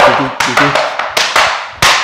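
Metal taps of tap shoes striking a wooden tap board in a quick run of sharp taps, about four a second, in a brush and backbrush combination. The backbrush is being done the wrong way, with the foot first brought forward, so it comes in late.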